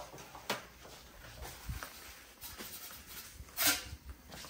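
A few light knocks and handling noises, then a brief scrape near the end as a perforated metal pizza peel slides a pizza into a gas pizza oven.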